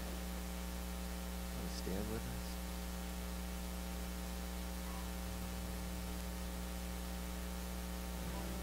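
Steady electrical mains hum with a ladder of evenly spaced overtones, from the amplified sound system, with one brief faint sound about two seconds in.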